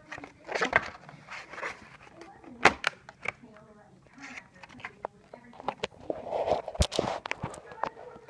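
Cardboard and plastic packaging of a computer mouse being handled: rustling with many sharp clicks and knocks as the mouse is taken out of its box insert.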